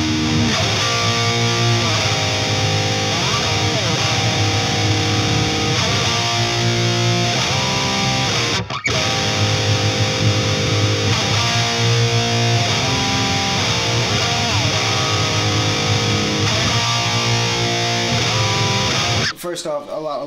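ESP LTD electric guitar playing heavy chords with pitch slides between them, along with the song's full band track. The music cuts out briefly about nine seconds in and stops just before the end.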